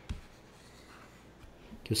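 Faint stylus strokes on a drawing tablet as a circle is drawn, with a soft knock just after the start; a man's voice starts speaking near the end.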